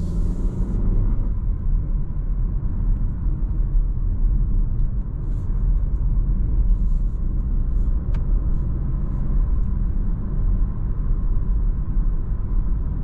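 Interior cabin sound of a Renault Arkana with a 1.3 TCe turbo four-cylinder petrol engine, driving and gently gaining speed from about 40 to 70 km/h: a steady low engine and tyre rumble. There is a brief hiss at the very start and a few faint ticks midway.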